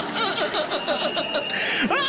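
A man laughing heartily in quick, repeated bursts, with people around him laughing too. A short burst of noise comes near the end.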